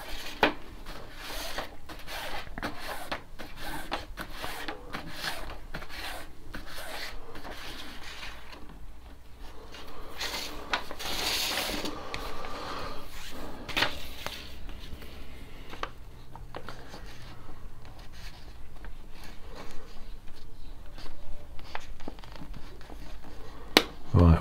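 Paracord being pulled through the loops of a woven knot mat, the cord rubbing and rasping against itself in short, irregular strokes as the working end goes over two and under two, with a sharp click near the end.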